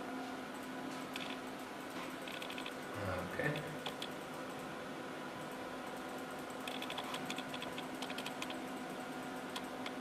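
Short bursts of light computer-keyboard clicking over a steady electronic hum, as the laser's temperature is stepped in the control software. The longest run of clicks comes in the second half.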